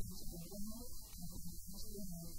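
A woman's voice talking, thin and muffled, over a steady electrical hum.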